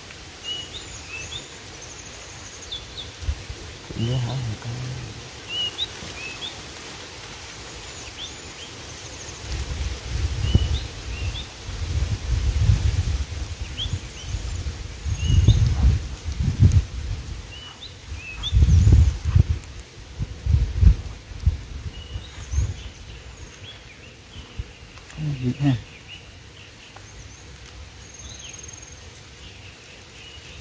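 Small birds chirping again and again in short high calls, with loud low rumbles and thumps through the middle.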